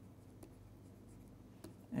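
Faint taps and scratches of a stylus writing on a pen tablet: a few soft clicks over a low, steady hum.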